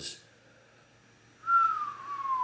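A cat's single long meow, high and thin, gliding slowly down in pitch, starting about one and a half seconds in.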